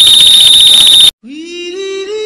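Very loud, distorted, shrill blast with a steady piercing tone, cutting off abruptly about a second in: the ear-splitting ending of the 'Nani' meme sound effect. A sung note then slides up in pitch and holds: the start of a 'yum' vocal sound effect.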